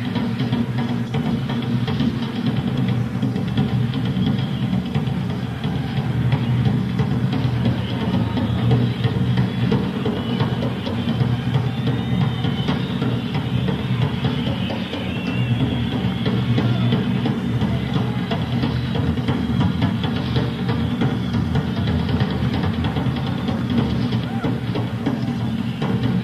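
Live rock drum solo on a full drum kit, a dense run of rapid drum and cymbal hits, from a raw bootleg tape.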